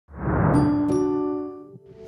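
Brand audio-logo chime: two struck bell-like notes about a third of a second apart over a short rising swell, ringing on and fading away.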